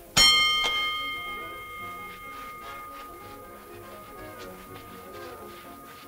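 A dome-shaped boxing ring bell struck once to start the round: a sharp clang whose ringing fades away over about two seconds. Quiet background music carries on after it.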